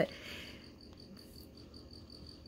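Faint, steady, high-pitched chirping that pulses at an even rapid rate, like a small insect such as a cricket, heard in the quiet pause.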